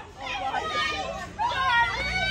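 Several young women laughing with high, excited voices, in gliding whoops rather than words.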